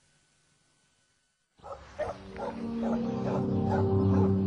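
Near silence for about a second and a half, then a dog barking a few times over a music bed of sustained low tones that swells in.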